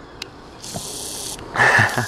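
A click, then a brief hiss, then a person laughing briefly near the end.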